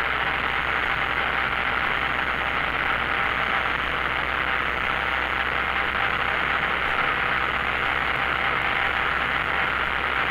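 Steady in-flight cabin noise of a single-engine light aircraft: the piston engine and propeller run at a constant setting as an even drone, with no change in power.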